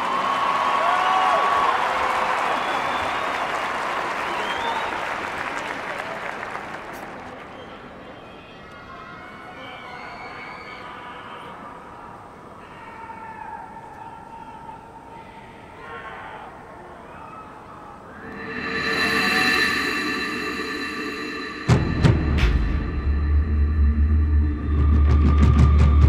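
Stadium crowd applauding and cheering, fading away over the first several seconds. Near the end the marching band enters: a loud held chord swells up, then heavy low drum and timpani hits.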